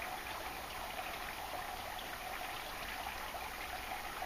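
Steady, even rushing noise with no breaks or changes.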